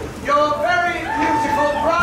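A person's voice, with pitched phrases that step up and down and one long held note about halfway through.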